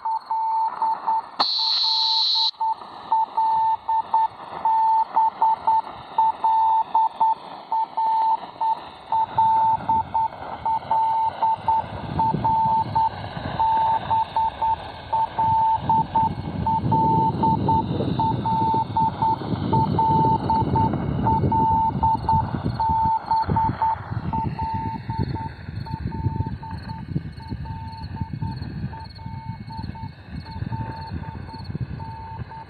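Shortwave Morse beacon on 5156 kHz received in USB on a Tecsun PL-680 portable, heard through its speaker: a single pitched tone keyed over and over, sending the channel marker letter "L" in an unbroken loop. There is hissing static behind it, which grows stronger about halfway through, and a brief higher beep about two seconds in.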